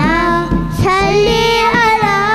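A young voice singing a Tamil Islamic devotional song in long, wavering held notes over a steady low drone.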